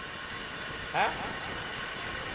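A man's voice through a microphone gives one short falling syllable about a second in, over a steady background hum.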